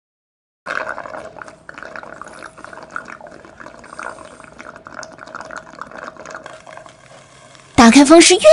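Drinking straw gurgling in a glass: a long, continuous bubbly slurp, full of small pops, that starts about a second in and runs until a loud voice cuts in near the end.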